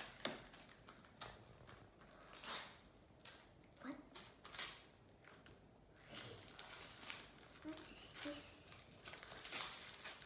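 Gift-wrapping paper rustling in irregular short, quiet handfuls as a small wrapped present is handled and opened.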